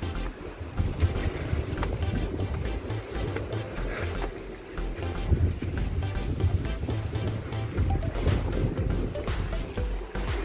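Wind buffeting a phone microphone in uneven low rumbling gusts, with background music underneath.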